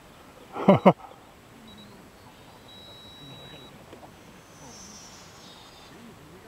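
A person laughs briefly near the start. Then there is faint outdoor background with a faint high-pitched whine that falls in pitch near the end: the electric motor of an F5D pylon-racing RC plane flying far off.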